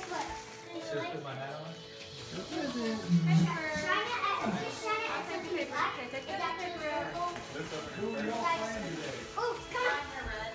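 Young children's voices and adult chatter, with children playing in a room.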